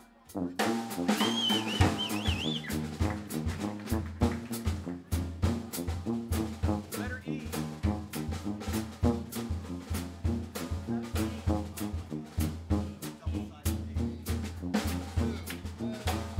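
Live jazz band playing: a sousaphone carrying the bass line under a drum kit with sharp snare and rimshot hits. After a brief break right at the start, the whole band comes back in.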